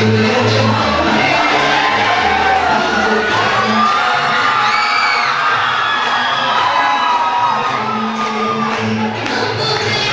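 Dance music played loud over a sound system with a heavy bass beat. The beat drops out for a few seconds in the middle while the audience cheers and shouts, then comes back near the end.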